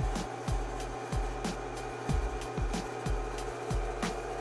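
Bass-heavy test track from a CD head unit, driving the amplifier on the dyno: repeated low pulses that each drop in pitch, a little over two a second, with ticks above and a steady hum underneath.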